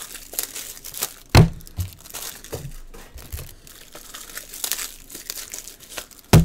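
Trading-card packaging crinkling and tearing as cards are unwrapped and handled, with many small ticks and one louder knock about a second and a half in.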